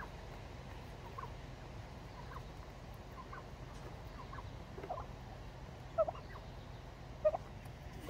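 Domestic white turkeys making short, rising calls again and again, with two louder calls near the end.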